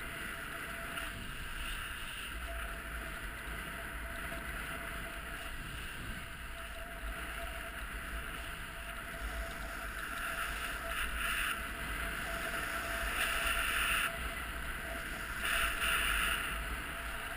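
Steady rushing of wind over the microphone, mixed with the sliding of skis over firm, hard-packed snow during a downhill run. It grows louder in the last several seconds.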